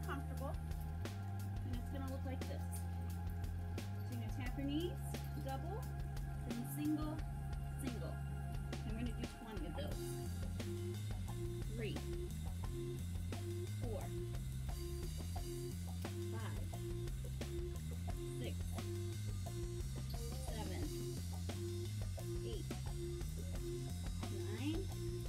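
Background music with a steady bass line. About ten seconds in it dips briefly, then a short note repeats about twice a second over the bass.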